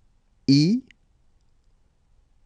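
Speech only: a voice says the French letter I ("ee") once, briefly, about half a second in.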